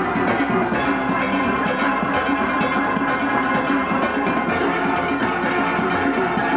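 Steel band playing: many steelpans struck in quick, steady strokes, a dense ringing of pitched metal notes.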